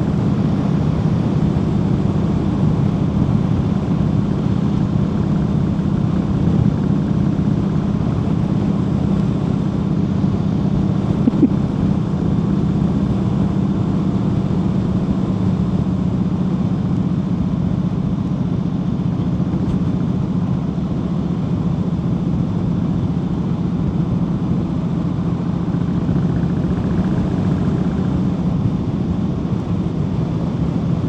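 Harley-Davidson Heritage Softail's V-twin engine running steadily at cruising speed, with the rush of riding wind, heard from the rider's seat. It holds an even pitch throughout, easing off slightly past the middle.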